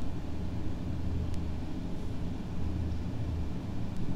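Steady low rumble of background noise with no speech, and a faint click about a second in.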